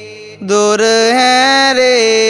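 A Buddhist monk chanting Sinhala seth kavi blessing verses in a long, held melodic line with slow rises and falls in pitch. The voice breaks off for a short breath at the start and comes back in about half a second later.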